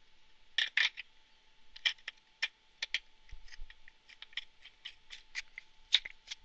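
Black PVC pipe adapter and compression ring being handled and fitted together by hand, giving a string of irregular plastic clicks and light scrapes.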